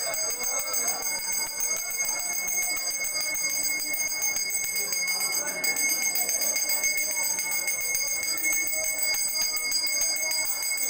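Temple puja bell rung rapidly and without pause during the aarti, giving a steady, high, shimmering ring, with faint voices underneath.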